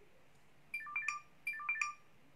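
Electronic ringtone chime: a short phrase of a few quick pure tones, played twice in a row.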